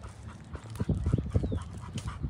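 A dog panting as it walks at heel, with footsteps on the paved road.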